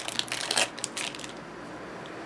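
Clear plastic wrapper crinkling as it is pulled off a spool of decorative twine: a quick run of crackles that dies away after a little over a second.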